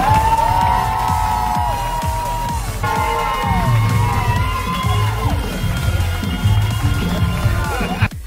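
Live stage-musical music with long held notes and a steady bass beat, under an audience cheering and whooping at a curtain call.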